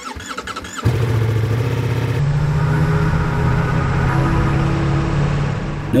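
Ducati Multistrada V4S motorcycle's V4 engine on its stock exhaust being started: a brief crank, then it catches just under a second in and runs at a steady idle.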